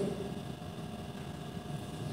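Faint steady room tone, a low even hum with no distinct events.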